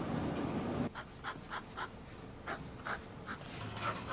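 Fountain pen nib scratching across lined paper in short, separate strokes as lines are drawn, starting about a second in after a faint steady hiss.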